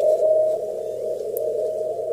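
Amateur radio receiver audio through a narrow 450 Hz CW filter: band noise with a weak Morse beacon tone near 600 Hz just above it, the tone strong at first and fading back into the noise about half a second in.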